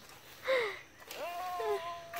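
A person's voice without words: a short falling exclamation, then a long drawn-out vocal sound held on one pitch.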